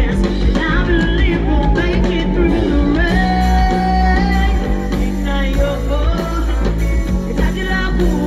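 A woman singing live into a microphone over a full band with guitar and heavy bass, heard through the concert PA; about three seconds in she holds one long note.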